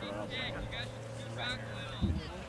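A steady low engine hum that fades out near the end, under faint distant voices.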